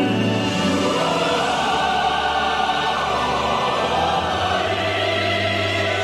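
A choir sings with orchestral accompaniment in a North Korean song of praise to Kim Il Sung.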